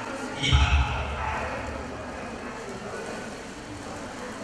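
Speech: a man's voice speaks a short phrase about half a second in, with a low boom, followed by a steady low murmur of background voices.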